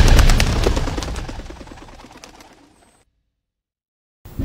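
Sound effects of an animated TV ad-break ident: quick clicks and rattles that fade away over about three seconds, then silence.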